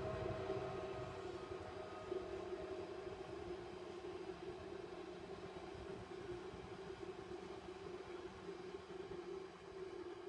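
Loaded freight wagons of a Class 70–hauled train rolling past. It is a steady drone with a low hum that slowly fades as the train draws away.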